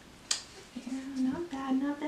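A woman humming a tune to herself: held notes that step up and down in pitch, starting under a second in, just after a short sharp noise.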